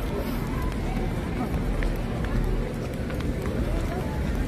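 Indistinct voices and street noise picked up by a handheld phone microphone on the move, under a steady low rumble.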